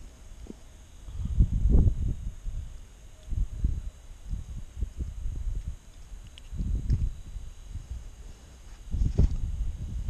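Handling noise: irregular low thumps and rubbing as a jacket and hands move against a body-worn camera while a bluegill is unhooked by hand. There are several soft bumps spread through the clip and a sharper knock near the end.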